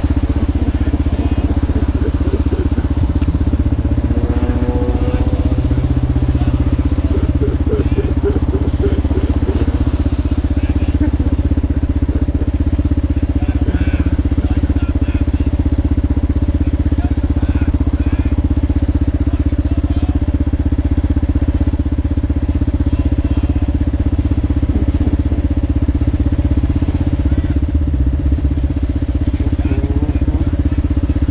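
Motorcycle engine idling steadily at a standstill, a constant low running sound close to the microphone.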